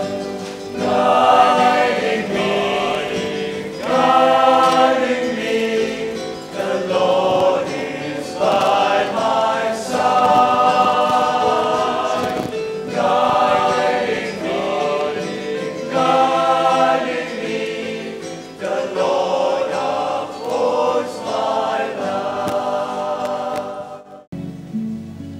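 A choir singing in long held phrases, stopping abruptly at the end.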